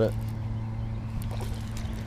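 A steady low motor hum, with faint splashes in the second half as a hooked bass thrashes at the water's surface.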